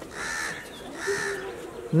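A bird calling twice outdoors: two harsh calls of about half a second each, roughly a second apart.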